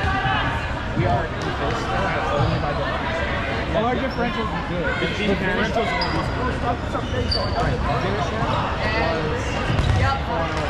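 Busy gymnasium during a dodgeball game: overlapping players' voices and calls in the hall, with the thuds of dodgeballs being thrown and hitting the floor, and a few brief high squeaks.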